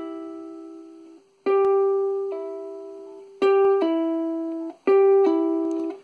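Ohana ukulele's E string played as pull-offs, three times: each pluck of the fretted third-fret note is followed a fraction of a second later by a drop to the open string as the finger pulls down and off, and each open note rings and fades. An earlier open note is still dying away at the start.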